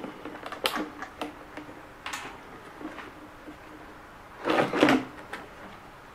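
Handling noise as the body shell of a ZD Racing EX07 RC car is unclipped and lifted off its chassis: scattered small plastic clicks and knocks, with a louder scuffing rustle about four and a half seconds in.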